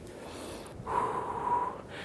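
A man breathing out hard during bodyweight squats: one long breath, about a second, starting a little under a second in, with a faint steady whistle in it.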